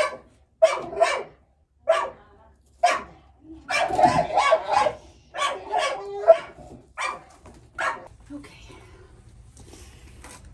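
A dog barking repeatedly, about a bark a second with some in quick pairs and a denser run around four seconds in, stopping about eight seconds in.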